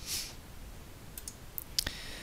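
Computer mouse clicking a few times in quick succession near the end, after a brief soft hiss at the start.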